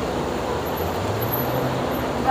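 Road traffic on a city street: steady traffic noise, with a car's engine hum as it passes close by.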